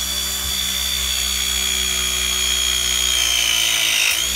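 Novopress battery press tool running a full press cycle, its electric motor and hydraulic pump whining steadily as the jaws crimp a 22 mm press fitting onto copper pipe. The whine starts suddenly and its pitch sags slightly near the end as the press completes.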